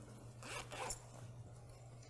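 Two quick rasping rustles about half a second in, over a steady low hum.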